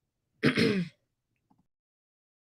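A person clears their throat once, briefly, about half a second in.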